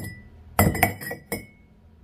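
Glazed handmade ceramic flowerpots clinking as one is set upside down onto another: a sharp clink at the start, a quick cluster of clinks a little past half a second and one more soon after, with a short ringing tone.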